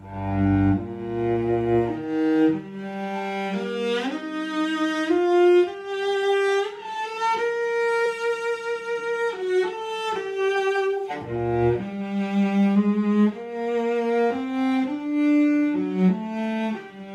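Double bass played with the bow, slowly working through a lyrical melody in the upper register with shifts between notes and a long held note in the middle.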